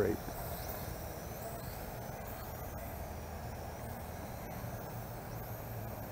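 Eachine E33 toy quadcopter's small motors and propellers buzzing faintly in flight at a distance, a faint high whine wavering in pitch over a steady low outdoor background hum.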